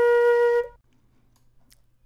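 A single held B-flat on a flute, played back from a recording. The pitch stays steady and the note cuts off under a second in.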